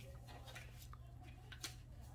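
Near silence: a steady low hum with a faint click about one and a half seconds in.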